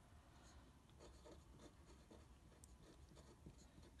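Faint scratching of a fine-tip edding 1800 pen on paper as a short word is hand-written.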